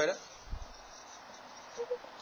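Felt-tip marker writing on a whiteboard: a faint, steady scratchy hiss as the tip is drawn across the board.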